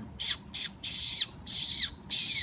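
A quick series of high, squeaky calling sounds made to call a grey squirrel, about two a second, each squeak ending in a falling tail.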